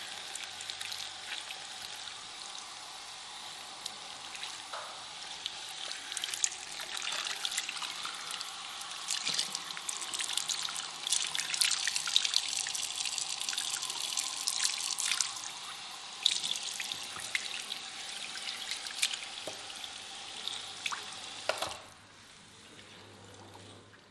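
Water running from hand-held salon shower sprays, splashing onto wet hair and into a backwash sink, louder in the middle. The water shuts off near the end.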